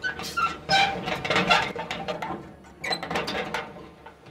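Metal clanking and rattling as the lock and bolt of a steel gate's pedestrian door are worked and the door is pulled open, a run of irregular clicks and knocks that stops shortly before the end.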